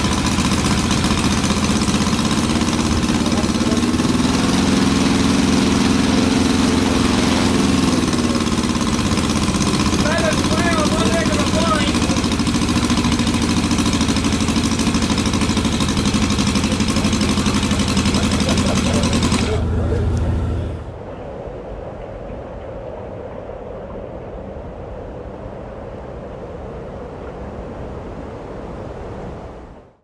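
Miniature four-cylinder inline model engine, a Gypsy Moth replica, running steadily, picking up speed briefly a few seconds in. It stops about 20 seconds in, leaving a much quieter background.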